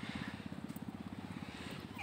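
An engine idling steadily, a fast even low throb.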